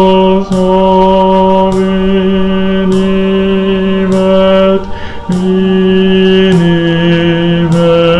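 A single low voice singing the bass line of a choral anthem in long, steady held notes, with a short break about five seconds in, then stepping down to a lower note.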